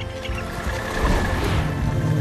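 Film score with sustained held notes, and a rushing whoosh that swells up about a second in and fades.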